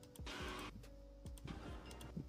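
Cartoon soundtrack playing quietly: background music with soft repeating low beats, and a brief hissing whoosh about half a second in.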